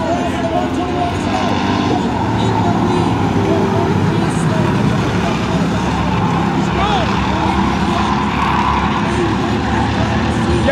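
A pack of short-track race cars running laps on a paved oval, several engines at speed blending into one steady, loud drone that swells as the cars come past.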